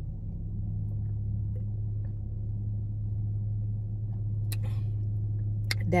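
Steady low hum of a car's running engine heard from inside the cabin, with a brief sharp sound about four and a half seconds in.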